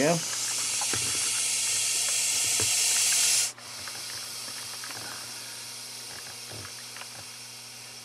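A snake hissing in an agitated, defensive mood. One long, loud hiss cuts off sharply about three and a half seconds in, and a quieter hiss follows and slowly fades.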